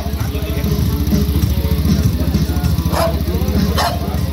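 A motorcycle engine idling steadily with a fast, even throb.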